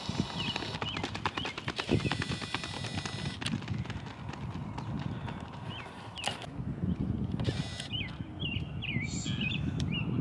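Quick footfalls of several sprinters slapping the rubber track as they drive out of the starting blocks. The footfalls come as a rapid run of sharp slaps over the first three seconds or so, then thin out.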